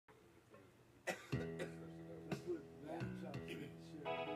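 Backing music for the song starts about a second in with a click. It plays held chords that change once about a second later.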